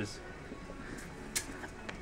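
Quiet indoor ambience with faint, indistinct voices and a brief soft hiss about one and a half seconds in.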